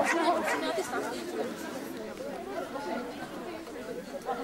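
Several people talking at once: background chatter of spectators, loudest in the first moment.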